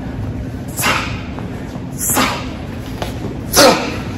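Three short, sharp rushes of air about a second and a half apart, one with each hook thrown at the air while shadowboxing; the last is the loudest.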